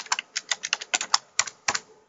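Computer keyboard typing: a fast run of keystrokes that stops shortly before the end.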